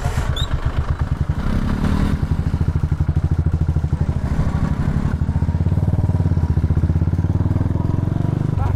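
Royal Enfield Classic 350's single-cylinder engine running at low speed with a steady, even beat as the bike rolls slowly.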